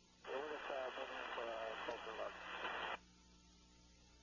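A short radio transmission: a voice through a narrow, tinny radio channel with hiss, switching on a moment in and cutting off sharply after nearly three seconds.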